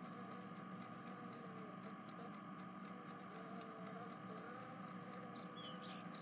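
Faint, steady background ambience with no speech, with a few short faint chirps high up near the end.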